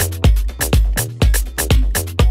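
Electronic dance music from a live DJ set: a steady four-on-the-floor kick drum about two beats a second, with crisp hi-hat hits between the kicks over a sustained bass line.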